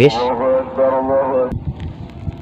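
A man's voice, drawn out and pitched, for about the first one and a half seconds, then low wind rumble on the microphone with a few faint clicks.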